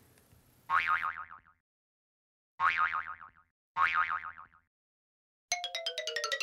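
A cartoon 'boing' sound effect played three times, each a short, wobbling springy tone that falls away, with silence between. Near the end a quick run of plinking music notes stepping downward begins.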